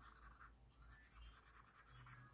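Very faint scratching of an acrylic marker's nib being scribbled back and forth on notebook paper; otherwise near silence.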